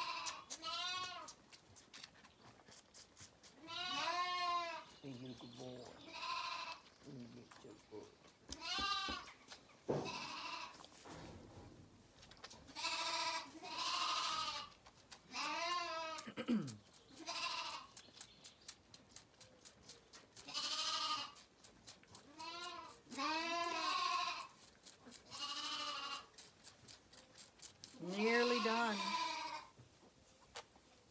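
Zwartbles lambs bleating over and over, about a dozen calls of under a second each, some higher-pitched and some lower.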